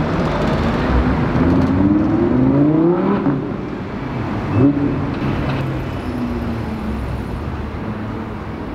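A sports car's engine accelerating in street traffic, its pitch climbing steadily for a second or two before breaking off about three seconds in. A short, sharp rev comes at about four and a half seconds, then engines run on at a steadier pitch.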